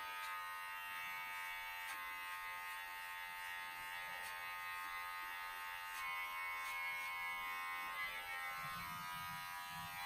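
Cordless electric hair clippers running with a steady buzz as they trim hair at the side of a man's head.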